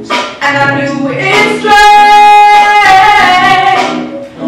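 A woman singing into a handheld microphone, with a long held note through the middle that steps slightly lower before it ends near the close.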